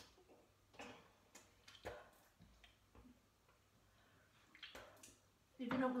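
Mostly quiet, with a few faint, short drips and clicks into a toilet bowl, scattered about half a second to a second apart, as someone leans over it after being sick.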